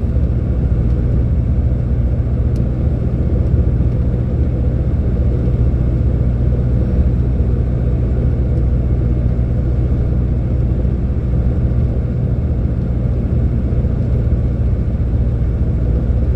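Heavy truck's diesel engine running steadily at cruising speed, heard from inside the cab as an even, low drone mixed with road noise.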